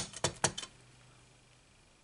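A clear acrylic stamp block tapped onto an ink pad: four quick plastic clicks within the first half second, the first the loudest.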